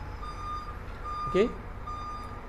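A repeating electronic beep: one high steady tone sounding for about half a second, roughly once a second, over a low hum. A man's voice briefly says "OK?" near the end.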